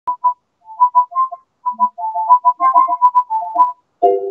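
A quick run of short, clipped electronic notes, several a second, moving between a few high pitches.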